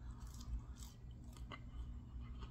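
A person chewing a mouthful of French fries: a handful of faint soft crunches.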